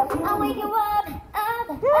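Pop song with a female vocal singing a gliding melody. The singing dips briefly a little past the middle, then a long held note begins near the end.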